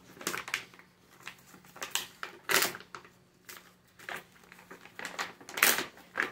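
Plastic retail bag crinkling and rustling as it is pulled open by hand: irregular crackles, with the loudest about two and a half seconds in and again near the end.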